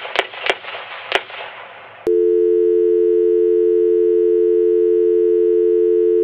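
A crackly hiss with sharp clicks about three times a second. About two seconds in, it gives way suddenly to a loud, steady telephone dial tone that holds on unbroken.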